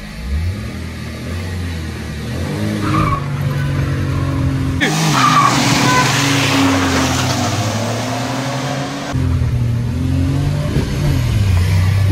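Maruti Suzuki Wagon R engine, running on petrol, revving hard as the car accelerates from a standing start in a drag race, its pitch climbing in steps through the gears, heard from inside the cabin. From about five to nine seconds in it gives way abruptly to a louder, rougher take of the cars accelerating.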